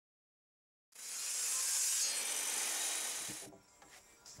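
Ryobi table saw ripping a 2x4 lengthwise along the fence: a loud, hissy cutting noise that starts about a second in and dies away shortly before the end.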